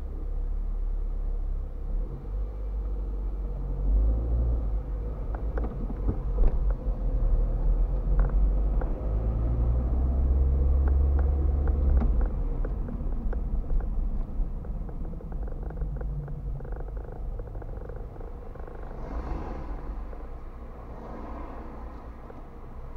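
Car engine and tyre rumble heard from inside the cabin by a dashcam as the car pulls away and drives along a street, with small scattered clicks. The rumble builds to its loudest about ten to twelve seconds in, then eases off as the car slows.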